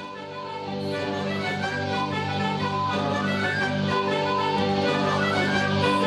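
Ceilidh band playing a dance tune, fading up over the first second or two and then running at a steady level.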